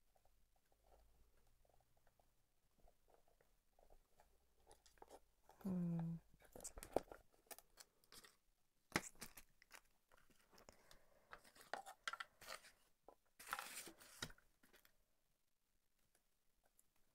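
Quiet handling of hard resin tiers and small washers: scattered light clicks, knocks and scrapes as the pieces are fitted together. A short pitched hum comes about six seconds in, and there is a longer scrape near the end.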